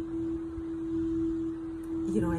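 A single steady, unchanging pure tone, held at one pitch without fading, over faint room noise.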